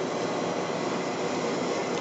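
Whirlpool bathtub's jet pump running, a steady rushing noise of air and water churning through the jets under the bubble-bath foam.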